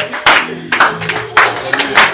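A congregation clapping in time, about two claps a second, with voices held underneath.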